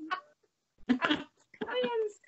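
Women laughing: two short bursts of laughter, the second a higher, drawn-out one near the end.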